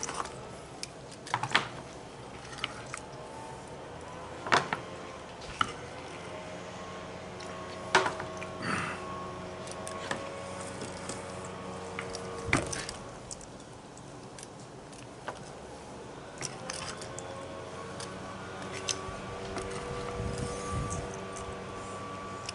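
Chef's knife and metal tongs tapping and knocking on a cutting board as a rack of smoked ribs is sliced: a scattering of separate sharp taps, the heaviest a dull knock about halfway through, over faint background music.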